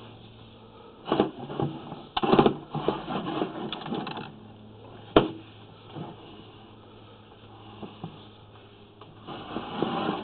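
Steady low electrical hum with irregular rattling and scraping, and one sharp click about five seconds in, as a sewer inspection camera's push cable is reeled back out of the pipe.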